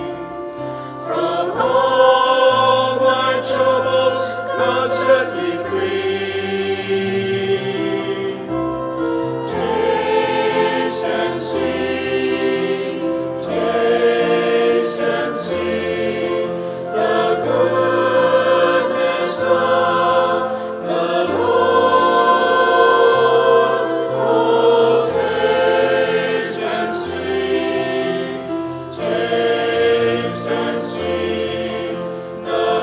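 Church choir singing a hymn, its held notes changing every second or two over a sustained low accompaniment.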